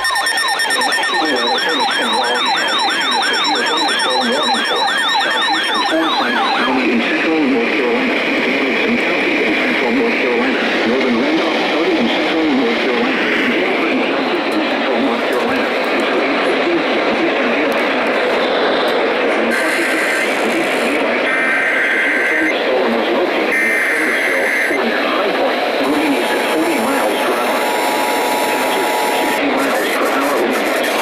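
Several radios sounding at once: a warbling, siren-like alert tone for the first six seconds, then a jumble of overlapping broadcast audio. About twenty seconds in, three one-second bursts of Emergency Alert System header data sound, followed near the end by the steady EAS attention tone, as another station starts relaying the severe thunderstorm warning.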